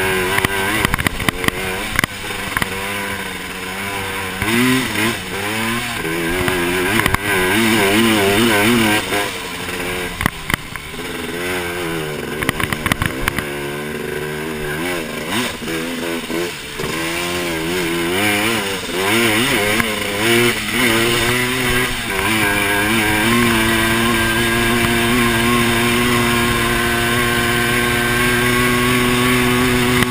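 Honda TRX250R quad's two-stroke engine under way, its pitch rising and falling as the throttle is worked for about the first twenty seconds, then held at a steady higher pitch near the end. A few sharp knocks come in the first few seconds and again around ten seconds in.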